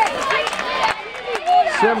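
Speech: voices talking, with no other distinct sound.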